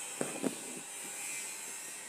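Thread being drawn through cloth during hand embroidery: two short scratchy pulls near the start, then a faint steady rustle of fabric.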